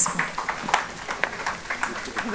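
Indistinct low voices of people close by, with a few short, sharp clicks scattered through.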